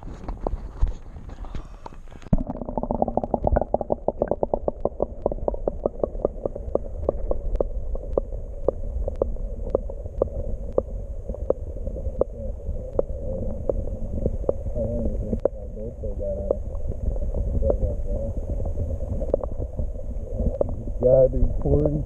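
An action camera held underwater in lake water: after a brief splash at the start, the sound turns dull and muffled from about two seconds in, with a low water rumble and a quick run of small clicks that thins out. Muffled voices come through near the end.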